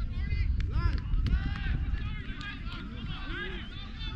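Distant players shouting and calling out across the pitch, over a constant low rumble.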